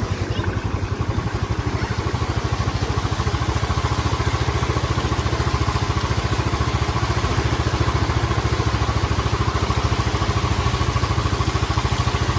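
Motorcycle engine running steadily at low speed with a fast, even pulse.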